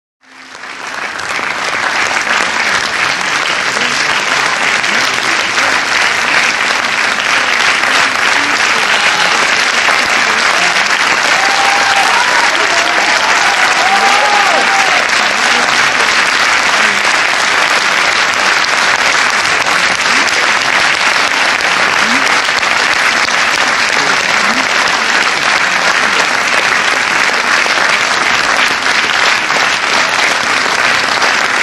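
A large cinema audience applauding, a long, steady round of clapping that swells up in the first second and holds without a break.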